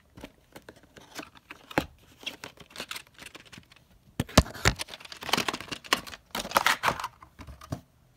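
A VHS cassette being slid out of its cardboard sleeve and handled: a run of scrapes, rustles and hard plastic clicks and knocks, loudest about four and a half seconds in and again between six and seven seconds.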